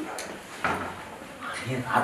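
A few clicks and a short scrape as hands work at a motorcycle. A man's voice comes in near the end.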